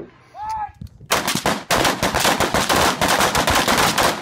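Gunfire from a line of shooters firing rifles together, starting about a second in: many rapid, overlapping shots with no pause.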